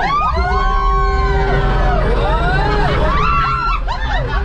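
Sci-fi spaceship flight effects from the Millennium Falcon ride simulator: layered engine and flyby tones that glide up and fall away in pitch in two waves, over a steady low rumble.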